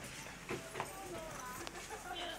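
Faint, indistinct voices of people nearby, with a few light clicks.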